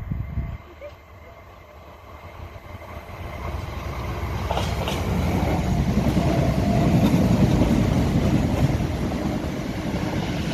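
A Class 455 electric multiple unit approaching and then running directly underneath. It grows louder over several seconds into a steady rumble of wheels on rail, loudest as the carriages pass below, then eases slightly.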